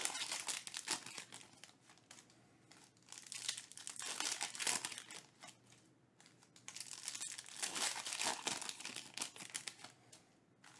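Foil trading-card pack wrappers being torn open and crinkled by hand, in three spells of rustling with short pauses between.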